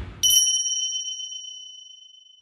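A single bright bell-like ding, struck about a quarter second in, that rings on a clear high tone and slowly fades away. The tail of a fading whoosh dies out just as it begins.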